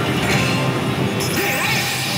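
Pachislot Bakemonogatari machine playing electronic music and sound effects over the loud, steady din of a pachinko parlor, with a sudden brighter effect starting a little over a second in as its screen performance changes.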